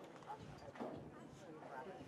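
Faint, distant voices of players calling out across an open soccer field, with a couple of light knocks about halfway through.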